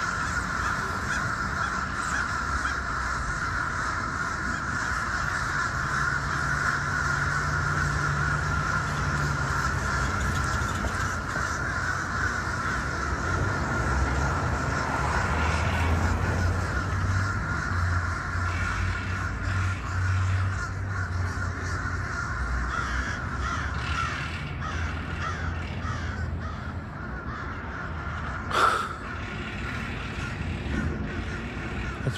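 A huge flock of crows calling overhead, their caws overlapping into a continuous din, with one louder, closer caw near the end.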